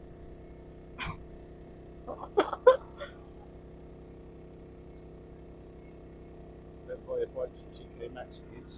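A few short bursts of laughter and murmured voices over a steady low hum.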